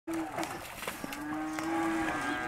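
Angus cattle mooing: a short moo at the start, then one long, steady moo from about a second in. A few light knocks sound in between.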